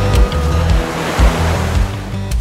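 Breaking surf washing in, a rushing hiss that swells through the middle, over background music with a deep, steady bass.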